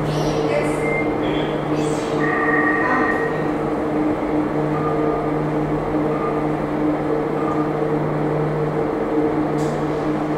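Schlossbergbahn funicular car running along its rail track, a steady hum with a low, even drone under it.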